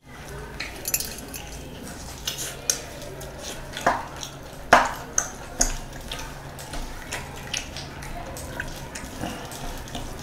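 Bare hand mixing mutton biryani on a ceramic plate: soft rustle of rice with scattered sharp clinks as the ringed fingers knock the plate, two of them louder around the middle.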